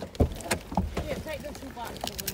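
Low, indistinct talking inside a car cabin, with a sharp bump about a quarter of a second in and a few lighter knocks from the phone being handled.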